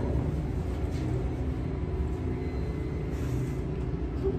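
Elevator car in motion, heard from inside the car: a steady low rumble with a faint hum.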